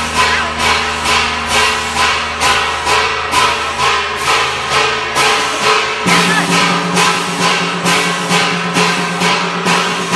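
Vietnamese funeral ritual music: a metallic percussion instrument strikes about twice a second over sustained melodic tones. The held low note changes about six seconds in.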